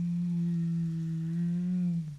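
A single steady low-pitched tone, like a held hum, sustained throughout with a slight waver in its second half.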